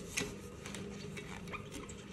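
Faint short squeaks and taps of a cloth in a rubber-gloved hand wiping the chrome flush button on a toilet cistern, over a low steady hum.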